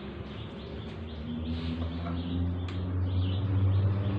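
A low, steady electrical hum from the electric bicycle's 12-volt battery and step-up inverter setup, growing louder in the second half, with a single sharp click near the middle. Birds chirp faintly in the background.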